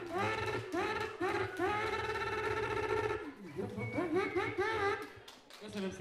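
A man's voice through a handheld microphone and hall PA, making a rhythmic run of short pitched vocal sounds that rise and fall. A longer held note comes around the middle, and there is a brief break a little past halfway.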